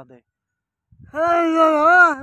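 A short gap, then about a second in a man's voice breaks into a long, loud, high held note, a sung wail that wavers slightly in pitch.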